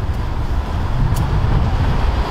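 Outdoor street noise heard through a handheld camera: a loud, steady low rumble with no speech.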